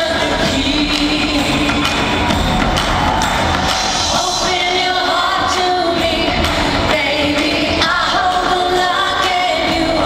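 Live pop song with a woman singing over the band and drums, recorded from the audience in an arena, so it sounds big and echoing. The sung lines hold long notes and slide between pitches, and the music runs at a steady level throughout.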